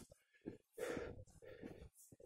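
Faint, heavy breathing of a man panting from a hard uphill climb at high altitude: one longer breath about a second in, among shorter soft sounds.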